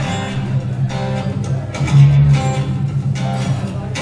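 Acoustic guitar strumming chords in a live performance, with a louder strum about two seconds in.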